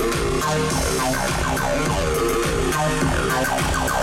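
Bass-heavy electronic music played through a hi-fi system with a Bowers & Wilkins PV1D subwoofer, as a bass test. Repeated falling synth sweeps, about two a second, run over a steady deep bass line.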